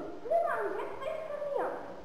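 A young girl's voice reading aloud from a book, in short phrases with pauses between them.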